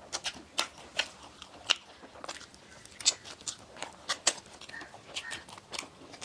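Close-up chewing and biting of soft cream-filled donuts: irregular short mouth clicks and smacks, a few each second.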